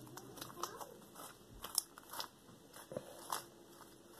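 Pink slime being squeezed and stretched by hand, giving off soft, irregular sticky pops and crackles.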